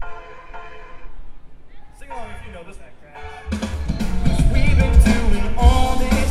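Live rock band playing: a soft intro of sustained chords, then drums, bass and electric guitars come in loudly about three and a half seconds in.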